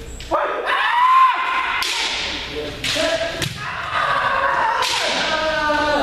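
Kendo sparring: bamboo shinai striking armour with sharp cracks, about five strikes, each followed by long drawn-out kiai shouts from several practitioners, echoing in a gymnasium.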